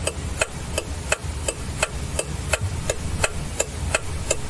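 Clock ticking sound effect, about three sharp ticks a second, over a steady background hiss and low rumble, marking time passing.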